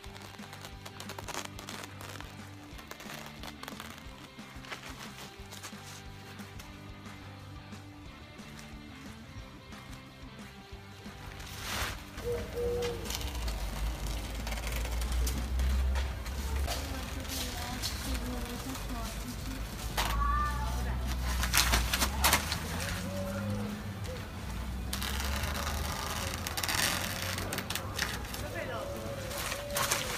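Soft background music with held low notes. About twelve seconds in, louder live sound takes over: a low wind rumble on the microphone, with the crackle of a polyethylene tarp being cut with a knife and handled, and scattered sharp clicks.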